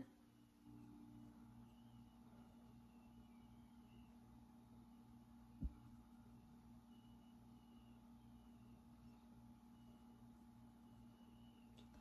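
Near silence: faint room tone with a low steady hum, broken by a single short click about halfway through.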